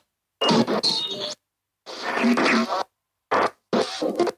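Spirit Box Lite ghost box app sweeping through a Bluetooth speaker: four short, chopped fragments of voice-like sound and noise, cut apart by gaps of dead silence.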